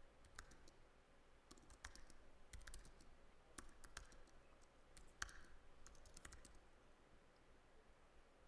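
Faint computer keyboard typing: scattered keystrokes, some in quick little runs, as a terminal command is typed.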